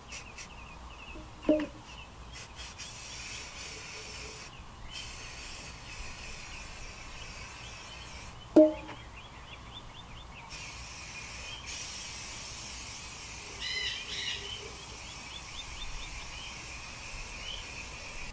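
Aerosol spray paint hissing from a can in long passes, breaking off briefly about four and a half seconds in and again for a couple of seconds around eight and a half seconds. Birds chirp over it, and two short sharp sounds stand out, the louder one about eight and a half seconds in.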